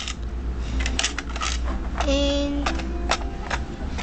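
Plastic LEGO pieces clicking and clattering as they are handled, in a run of irregular sharp clicks. About two seconds in, a person's voice holds a drawn-out 'uhh'.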